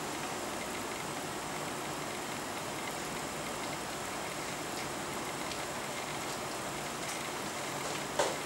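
A steady rushing hiss, even across high and low pitches, with a few faint clicks.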